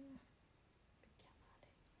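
Near silence, with a short vocal sound at the very start and then two or three faint clicks from a laptop trackpad being pressed.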